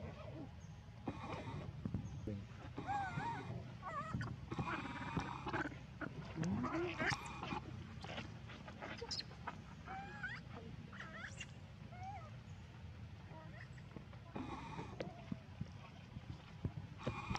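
Baby macaque crying: a string of short, high, wavering squeals and whimpers with brief pauses between, and one call that rises in pitch about six seconds in.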